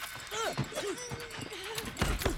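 A person's drawn-out shouting cry during a hand-to-hand fight, sweeping down at first and then held on a wavering pitch for about a second and a half, with a few dull knocks under it.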